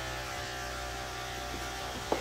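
Electric hair clippers running with a steady hum.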